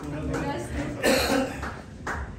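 Indistinct voices in a room, with one short, loud vocal burst about a second in.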